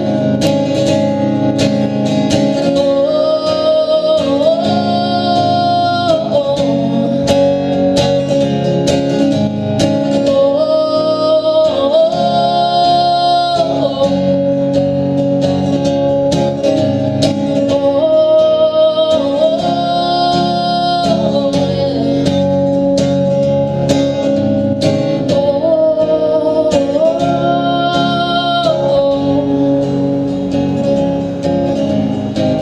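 Live solo acoustic song: an acoustic guitar strummed steadily under a woman's wordless vocal melody, which rises and falls in repeating phrases about every eight seconds.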